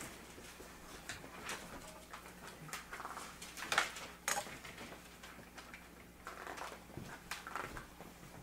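Dry-erase marker squeaking and scratching on a whiteboard as words are written, in a series of short strokes. The loudest squeaks come about four seconds in.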